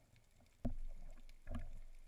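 Two dull knocks heard underwater, the first sudden and the louder, the second under a second later, each dying away with a short low ring.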